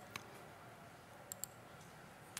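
Faint clicks on a laptop as a menu is worked: one just after the start, then two in quick succession about a second and a half in, over quiet room tone.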